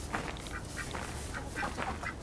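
Hens in a coop clucking: a quick string of short, repeated clucks.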